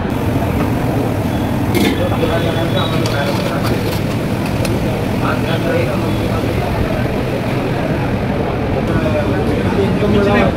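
Steady busy-street background: a constant rumble of traffic with indistinct voices, and a few faint clicks.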